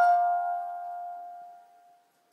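Lullaby music: a single bell-like mallet note is struck at the start, rings, and fades away over nearly two seconds.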